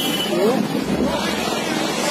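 Busy street noise: a steady rushing haze of traffic with people's voices calling out over it.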